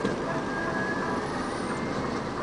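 Heavy machinery at a gravel plant running with a steady, even drone.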